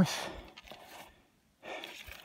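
A man breathing between phrases: a breathy exhale that fades over about half a second, then an inhale about a second and a half in.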